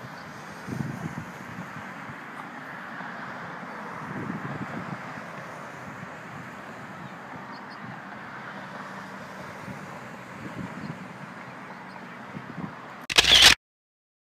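Steady outdoor background of distant road traffic, with a few soft handling thumps. Near the end a short, loud burst, then the sound cuts off abruptly to silence.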